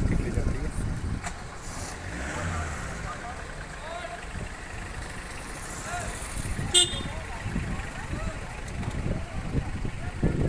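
Road traffic: vehicles running and passing close by, with a low steady rumble throughout. A brief, sharp, high-pitched toot sounds about seven seconds in.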